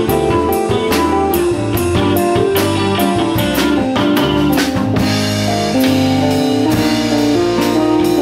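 Live band playing: drum kit with steady strokes under electric and acoustic guitars, bass guitar and keyboard.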